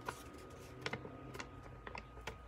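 A few faint, short clicks and rustles from a hand-held sheet of paper, heard over quiet room tone.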